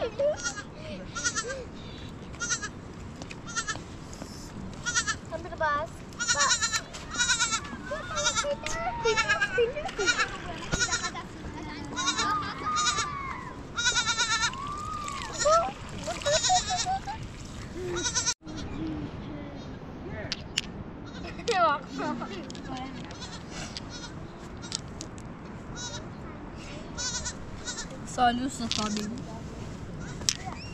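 Young goat bleating over and over, the calls coming thickest in the first two-thirds, with people's voices around it.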